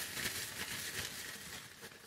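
Clear plastic zip-top bag crinkling as a hand rummages through the paper slips inside it to draw names; the rustling fades toward the end.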